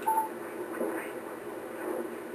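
HF transceiver receiver audio as the VFO dial is tuned across the 20 meter phone band: band noise with faint, garbled single-sideband voices sliding past, and a brief whistle just after the start.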